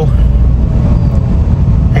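Heavy, steady low rumble of engine and road noise heard from inside a moving Tata Nano.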